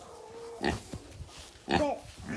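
A pig grunting close to the microphone: one short grunt a little after half a second in and a brief higher, pitched one near the end.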